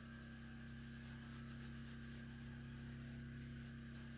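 Faint, quick rubbing strokes on the metal body of a wood stove, repeating evenly over a steady low hum.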